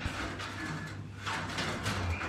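A brick clamp being handled and worked by hand: a few short clicks and scrapes, over a steady low hum.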